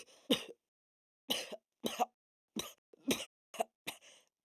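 A young man coughing in a fit of about eight harsh, irregular coughs, choking on cigarette smoke as an inexperienced smoker.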